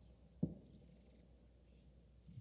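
Very quiet passage of a post-rock album recording: a faint steady low hum, with a single soft low thump about half a second in.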